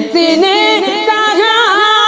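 Unaccompanied solo voice singing a naat, a devotional song in praise of the Prophet, in a quick winding run of ornamented pitch that settles into a long held note from about halfway through.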